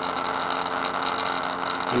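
Steady buzzing hum from a pulsed coil rig: a one-inch neodymium magnet vibrating on the coil under its plastic cover, with the motor-driven rotary switch running. The coil's back EMF is being fed back into it, which sets the magnet hovering.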